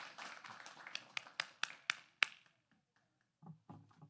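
Irregular sharp taps and knocks at the lectern microphone, about ten over two seconds, as one presenter steps away and the next takes the podium. Then it goes quiet, with a couple of brief low murmurs near the end.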